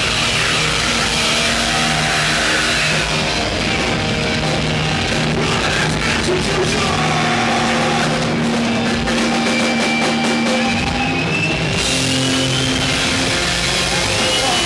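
A live heavy metal band plays loudly, with distorted electric guitar and a drum kit. The high cymbal wash thins out for a few seconds midway and comes back in near the end.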